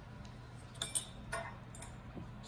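Light clicks and taps of wood on a stone countertop: the wooden roller-coaster frame is shifted and popsicle-stick shims are set under its feet to level it. There are about four small clicks, mostly in the second half.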